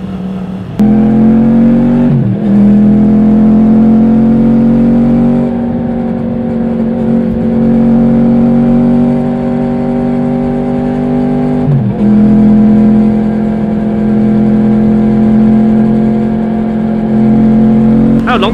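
Yamaha MT-10's crossplane inline-four engine pulling along under throttle while riding. It comes on loud under a second in and rises slowly in pitch, with a short drop at an upshift about two seconds in and another near twelve seconds, then runs fairly steady.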